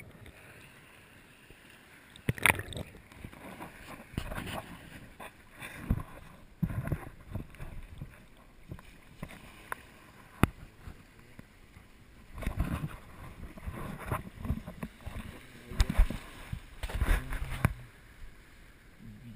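Irregular splashing, knocks and scuffs of a person wading out of shallow water and stepping over stones and tree roots, heard through a body-worn action camera that bumps with each move. A few sharp knocks stand out, with a run of heavier thuds near the end.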